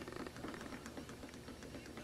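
Quiet room tone with a few faint small clicks of fingers handling a small plastic-and-metal LED camera light.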